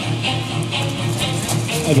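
Background music: a guitar-led track with a steady beat of about two strikes a second.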